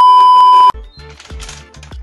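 Edited-in TV test-pattern sound effect: a loud, steady high beep broken by crackling glitch static, which cuts off suddenly under a second in. Background music with a steady low beat follows.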